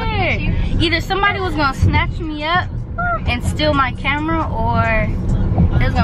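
A person's voice, talking or singing without clear words, over the steady low rumble of a road vehicle.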